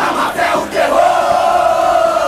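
A crowd-like group of voices shouting, then holding one long note, as a stadium-style chant within a recorded pop-rock song.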